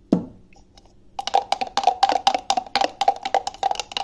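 Steel spoon knocking and scraping against the inside of a mixer-grinder jar while stirring blended mango pulp: a fast, even run of clicks, about six a second, starting about a second in, with the jar ringing under them.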